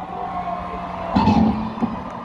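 Concert crowd cheering and whistling between songs over a steady low hum from the stage. A short loud burst comes about a second in.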